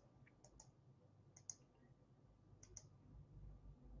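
Near silence: room tone with a few faint, short clicks coming in close pairs during the first three seconds.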